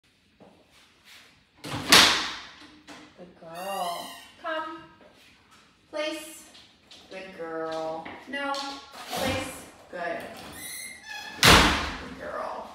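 Two loud door thuds from a glass-panelled French door, one about two seconds in and one near the end, between a woman's spoken commands to a dog.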